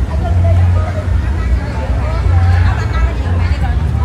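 Crowd chatter, several people talking at once, over a steady low rumble of an idling vehicle engine.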